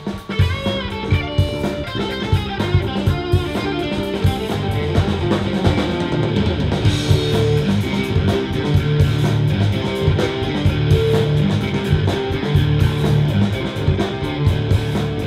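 Live rock band with no vocals: an electric guitar through a Marshall amp plays quick lead lines with bent notes over bass guitar and drums.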